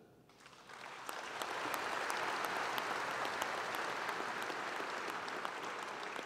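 Audience applauding: the clapping builds up over the first second and a half, holds steady, and eases slightly near the end.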